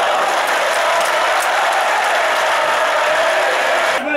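Large football crowd cheering and applauding, a loud, steady wall of noise from the stands.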